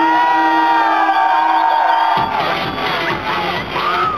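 Club electronic dance music played by a DJ over a PA, with a crowd cheering and screaming over it. For the first half the bass is cut out; then the bass and a steady beat come back in, about halfway through.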